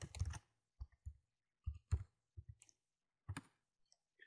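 Faint, irregular clicks of a computer keyboard and mouse as a file name is typed into a save dialog and saved.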